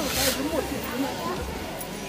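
Scattered voices of a crowd of Tibetan pilgrims, with a short hiss right at the start from a pilgrim prostrating and sliding forward on the stone pavement.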